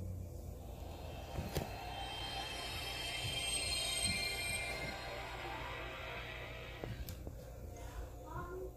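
Background music: a sustained high chord of held tones that swells to a peak about halfway through and then fades away.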